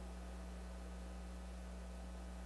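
Steady low electrical hum with faint hiss, unchanging throughout, and no other sound.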